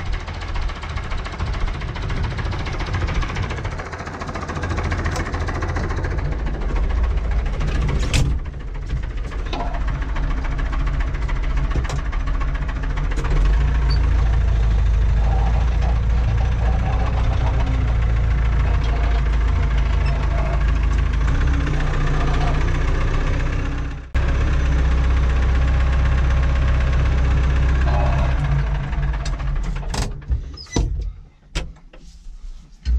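Old farm tractor's diesel engine running steadily, growing louder about halfway through when heard from inside its cab, with a sudden brief drop about three-quarters of the way in.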